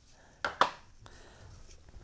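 Two quick, sharp taps about half a second in as a small item is set down, then faint rustling as a T-shirt is drawn out of a cardboard box.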